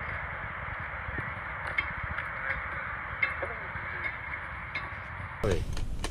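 Steady, muffled background noise with a few faint clicks, cut off abruptly near the end by a change to a clearer, louder recording.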